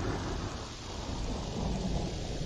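Thunderstorm-like sound effect opening a song's backing track: a deep, steady wash of noise like rolling thunder and rain, fading slightly lower in pitch.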